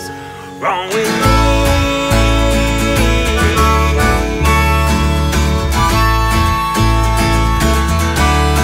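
Live acoustic band playing an instrumental passage: harmonica over strummed acoustic guitar and plucked upright bass. It is briefly quieter at the start, with a rising note sliding in about half a second in, then the full band plays with a steady bass pulse.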